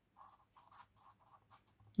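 Marker pen writing on paper: a quick series of faint, short strokes as a word is written out.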